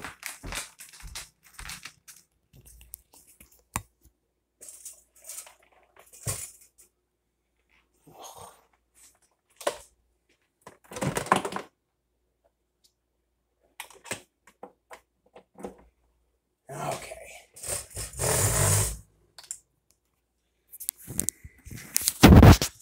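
Handling noise: scattered clicks, knocks and rustles as a phone camera is picked up, moved and set down on a kitchen counter, with louder rustling bursts about eleven seconds in and again a few seconds before the end.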